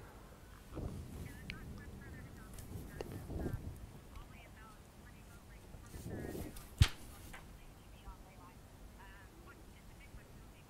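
Faint wind and water noise from the racing scene, swelling in a few gusts, with scattered short high-pitched calls and one sharp knock about seven seconds in.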